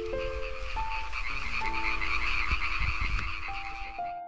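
A dense chorus of many frogs or toads calling at once, a fast rattling trill that cuts off suddenly at the end. Soft piano music plays along underneath.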